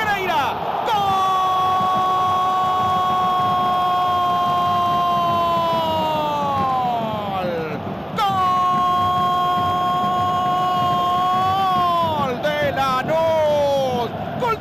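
A football commentator's long held goal cry, "gooool", sustained on one high pitch for about six seconds and falling away, then a second held cry of about four seconds that breaks into shouted words near the end, over stadium crowd noise.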